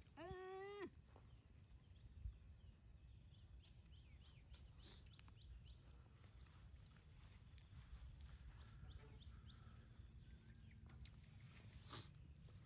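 A baby macaque gives one short, steady-pitched coo call, under a second long, right at the start. After it there is only faint outdoor background with light scattered clicks and rustles.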